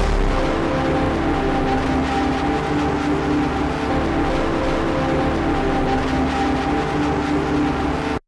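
Instrumental background music with long held chords at a steady level.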